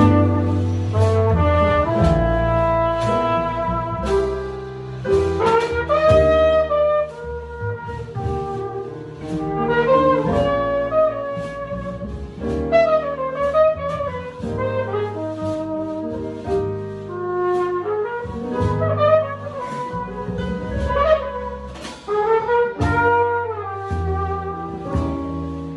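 A live jazz combo: a flugelhorn carries a moving melodic line with runs and bent notes. Upright bass, piano and drums play behind it, with steady cymbal strokes.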